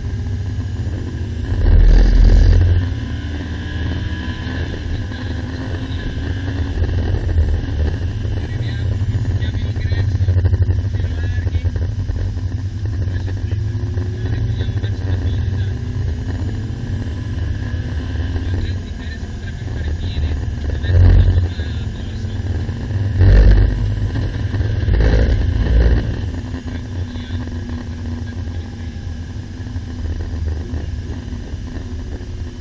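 Lamborghini Gallardo's V10 engine heard from inside the cabin at speed on track, its pitch rising and falling as it pulls through the gears, over steady road and wind noise. There are a few loud, low thumps about two seconds in and several more near 21 to 26 seconds.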